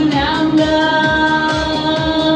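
Backing track of a Mandarin pop ballad playing loud over a speaker in an instrumental passage between sung lines: a held melody line over a steady beat.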